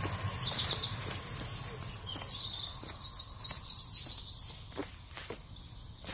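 A songbird singing: two phrases of quick, repeated high notes, each lasting a couple of seconds, over a steady low background rumble. A few sharp clicks near the end.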